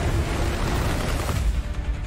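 Rapid gunfire and heavy booms over loud music in a film-trailer sound mix, the gunfire dropping away about a second and a half in.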